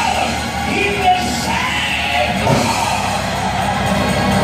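Live gospel music with singing, loud and continuous.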